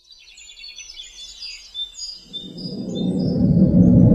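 Birds chirping and twittering. From about two seconds in, a low rumbling musical drone swells up and grows steadily louder until it covers the birdsong.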